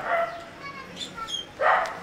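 A dog barking twice, about a second and a half apart, in the background.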